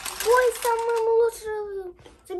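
A child's voice held out in a long, drawn-out note, steady for a while and then sagging slightly in pitch near the end.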